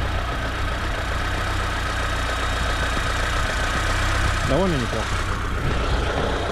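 Lada Niva Travel's four-cylinder petrol engine idling steadily, heard with the bonnet open.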